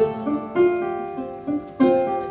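Six-string ukulele playing gently picked chords, each chord plucked and left to ring: one at the start, another about half a second in, and a third near the end.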